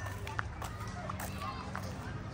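Footsteps of a person jogging, about two footfalls a second, over a low steady hum.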